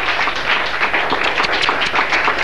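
Applause: many hands clapping in a dense, steady patter.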